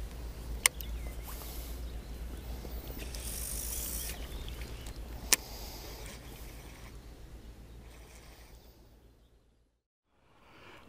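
Wind rumbling and hissing on the microphone by open water, with two sharp clicks, about a second in and about five seconds in. It fades away to silence near the end.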